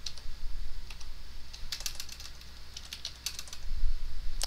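Typing on a computer keyboard: irregular clusters of keystrokes with short pauses between them, over a faint steady low hum.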